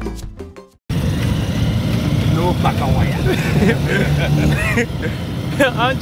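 Music fades out, then a sudden cut to the steady engine and road noise of a motor tricycle (a Pragya tuk-tuk) on the move, heard from inside its passenger cabin, with voices over it from about halfway in.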